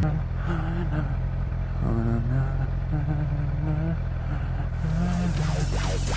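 Sport motorcycle engine running at low speed while the bike rolls slowly, a steady low drone. Faint voice-like sounds come over it, and near the end a rising hiss comes in.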